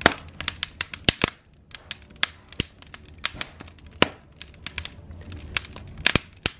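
Wood fire in a fireplace crackling, with irregular sharp pops and snaps from the burning logs.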